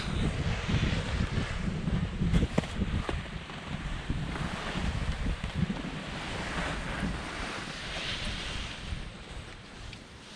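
Wind buffeting the camera microphone: a gusty low rumble with a hiss above it, with a few brief knocks about two and a half to three seconds in, easing off near the end.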